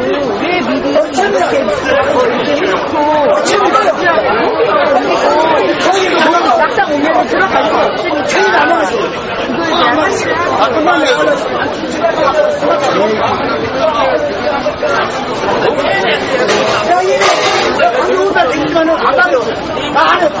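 Crowd chatter: many people talking over one another at close range, with no single voice standing out.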